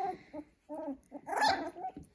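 Young Cavapoo puppy giving a couple of short whimpers, then a louder yip about one and a half seconds in.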